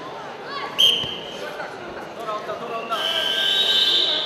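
A referee's whistle blows twice over shouting voices. The first is a short, sharp blast about a second in. The second is a longer, steady blast near the end, signalling the start of wrestling from par terre.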